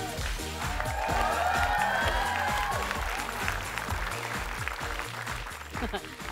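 A studio audience applauding over upbeat theme music with a steady beat.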